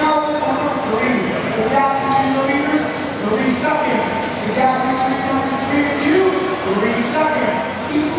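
Several 1/10-scale electric RC touring cars racing on a carpet track: their motors whine in overlapping tones that rise and fall in pitch as the cars speed up and slow through the corners.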